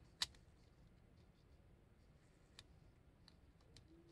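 Near silence, broken by a few small clicks: one sharp click about a quarter second in, then three fainter ones in the second half.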